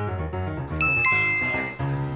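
Background music with a bright chime sound effect about a second in: two high ringing tones, the second a little lower, each held briefly.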